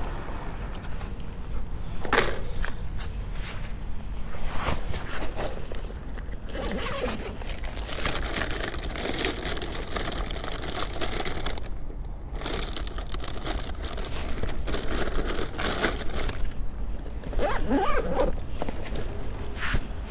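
Zipper and rustling of a thermal food-delivery backpack being opened and its contents handled, a run of irregular scrapes and crinkles, while checking whether a drink inside has spilled.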